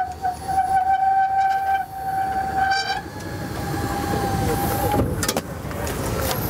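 Electric motor of a powered transfer seat base whining steadily as the driver's seat swivels and slides forward into the driving position. The whine breaks briefly twice and cuts off about five seconds in, followed by a couple of clicks as the seat stops.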